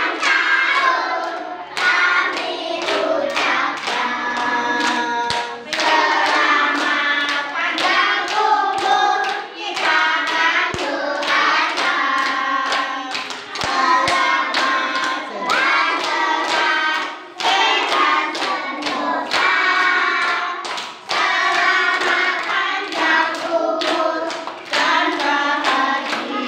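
A group of young children, with a few adults, singing a birthday song together and clapping along in time.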